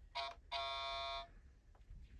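Electronic beep tone, a short blip followed by a longer held beep of about 0.7 s, at a steady pitch; the same short-long pattern repeats about every two seconds.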